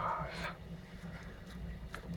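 A man's short spoken word at the start, then a quiet background with a faint, steady low hum.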